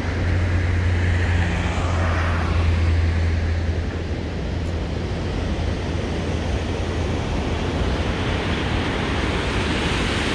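A pickup truck driving past on the road across the dam, its engine and tyre hum swelling and then fading over the first four seconds, over a steady rushing background.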